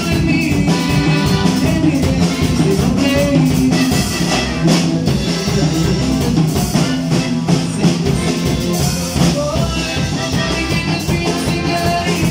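A band playing a regional Mexican piece together: button accordion over drum kit, bass and guitar, with a steady beat.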